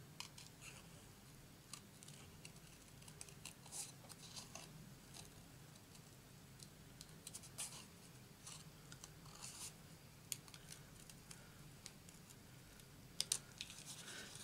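Small craft scissors snipping around a stamped flower in card stock: faint, irregular short snips, with a couple of sharper clicks near the end.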